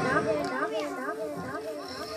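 Children's voices chattering, softer than the amplified singing on either side, in a gap between a boy's sung phrases.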